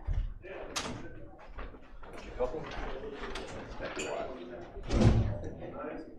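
Low, untranscribed talk with handling noise at a meeting table as papers are gathered up: a knock at the start and a louder, deep thump about five seconds in.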